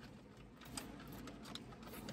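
Quiet car cabin: a faint steady hum of the air conditioning, with a few soft ticks and rustles of a napkin and a plastic dressing cup being handled.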